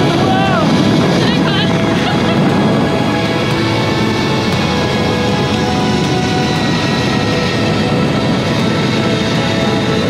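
Steady rushing noise of a fast zipline ride, with wind on a camera microphone travelling along with the rider, under background music with held tones. A few short vocal cries sound in the first two seconds.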